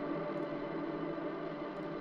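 Electric guitar ringing out through the Axe-FX III's Nimbostratus reverb with a 22-second decay: a steady wash of held notes with no new attack.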